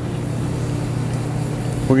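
A steady low mechanical hum at an even level.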